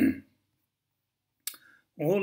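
A man's speaking voice breaks off, followed by about a second of silence. Then comes a single short click, just before the voice starts again.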